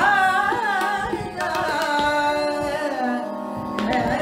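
A woman singing a Holi song in Indian classical style, holding long notes with gliding ornaments, accompanied by tabla strokes over a steady low drone note.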